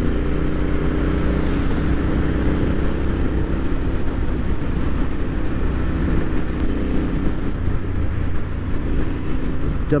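Royal Enfield Interceptor 650's parallel-twin engine running steadily at cruising speed, with wind and road noise over it.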